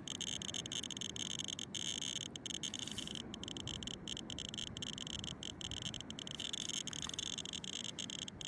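RadiaCode 102 scintillation radiation detector clicking rapidly in a dense, steady stream of high-pitched counts. It is held against uranium-bearing copper shale reading about one microsievert per hour, and the fast click rate is the sign of elevated radiation.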